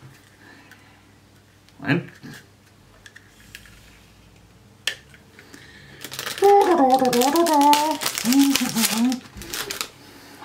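A small cardboard box being pried and torn open by hand, a loud crackling and rustling that starts about six seconds in and lasts about three seconds, with a man humming over it.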